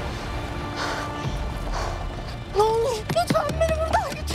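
Tense drama score with a low drone. About two and a half seconds in, a young woman starts crying out in panic, with a few sharp knocks as her hand strikes a car window.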